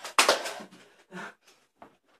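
People gasping and blowing air out hard through mouths burning from extremely hot chillies. There is one loud, hissing exhale just after the start, then a few shorter, softer breaths.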